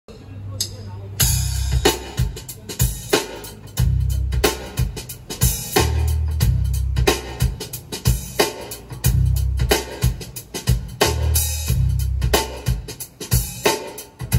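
Drum-heavy music with a deep, recurring bass pulse and sharp drum hits, played back through a pair of Jamo 707 floor-standing loudspeakers.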